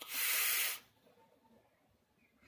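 A person forcefully blowing out a large cloud of vape vapour: one loud, breathy hiss lasting under a second.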